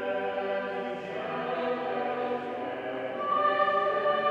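A choir singing sustained, slow-moving harmony, several parts holding notes together; a higher line comes in strongly near the end.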